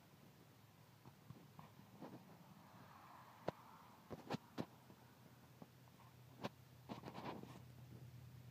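Near silence broken by a few short, sharp clicks and taps, one alone about halfway through, then a quick group of three, with another small cluster near the end.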